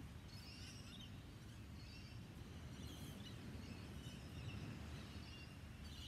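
Faint outdoor ambience: a steady low rumble with scattered short bird chirps throughout.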